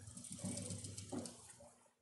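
Sewing machine stitching quietly through fabric and zipper tape, slowing and stopping near the end.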